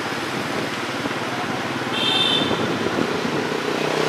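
Motorbike running steadily along a city street, heard from the pillion seat, with wind and road noise and the hum of surrounding traffic. A short high-pitched beep sounds about two seconds in, where the noise grows a little louder.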